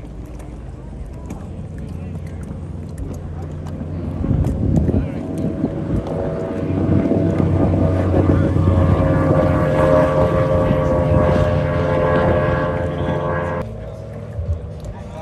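Race boat's engine running at full throttle on a high-speed pass, growing louder as the boat approaches and goes by. It cuts off suddenly near the end.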